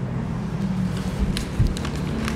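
A steady low rumble, picked up by the desk microphones, with a few faint paper rustles about one and a half seconds in as a folded ballot is handled.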